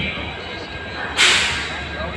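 Passenger train coaches rolling slowly past with a steady low rumble. A bit over a second in, a sudden short, loud hiss cuts in and fades within about half a second.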